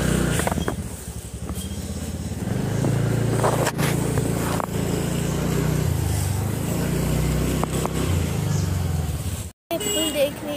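A motorbike engine runs steadily at a low pitch while riding, with a few knocks and rattles over the road noise. The sound cuts out abruptly for a moment near the end.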